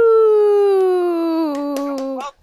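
A person's voice holding one long, drawn-out sung "ooh" that slowly falls in pitch.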